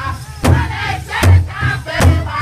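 Powwow drum group singing together in high-pitched voices while several singers strike one large rawhide powwow drum in unison with drumsticks, a slow steady beat of about two strokes here.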